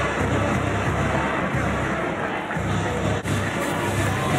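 Music playing in a football stadium over crowd noise, with a sudden break a little past three seconds in where the broadcast cuts to the next play.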